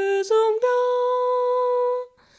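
A single unaccompanied voice humming a hymn melody: a few short notes stepping upward, then one long held note that breaks off at the end.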